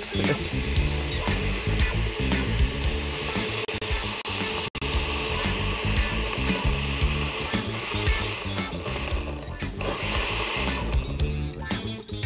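Countertop blender motor running steadily, churning a thick banana-and-date smoothie, under background music.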